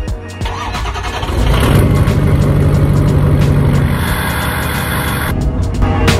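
Ford 6.0 Powerstroke V8 turbodiesel heard at the exhaust tip, cranking from about half a second in, catching about a second later and then running steadily.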